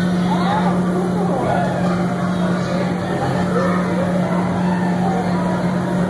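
Steady low hum of the electric blower fans that keep the inflatable bounce structures inflated, with children's voices calling and chattering over it.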